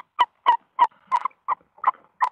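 Tawny owls calling in a nest box during a feeding visit, as the adult female hands prey to her owlets: a rapid series of short, clipped calls, about four a second.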